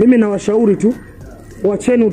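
A man's voice speaking Swahili, breaking off for about half a second midway and then going on.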